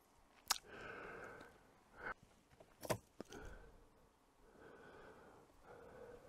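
Faint breathing close to the microphone, a few soft exhales, with two sharp clicks from handling fishing tackle about half a second and three seconds in.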